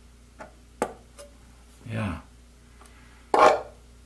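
A few light clicks and taps of a steel caliper and small metal washers being handled, with a short, louder burst of handling noise near the end.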